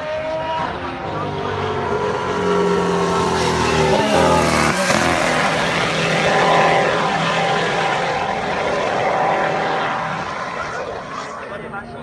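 Formula One car's engine passing on the circuit, growing louder as it approaches and fading as it goes by, its pitch sliding down as it passes. The car is held to reduced speed under a virtual safety car.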